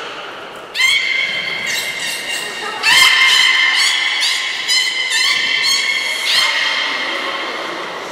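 Beluga whale calling in the air with its head above water: a string of high, buzzing squeals, the first about a second in and the loudest and longest about three seconds in.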